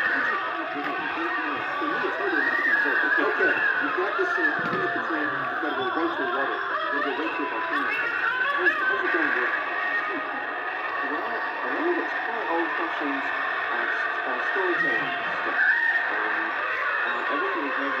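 Many overlapping voices chattering and laughing, with shrieks and squeals among them.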